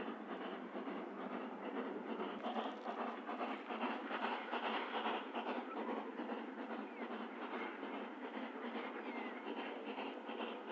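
The Coffee Pot, Steam Motor Coach No 1, a small steam railcar, running along the line and heard from a distance: a steady mix of steam exhaust and wheel-on-rail noise.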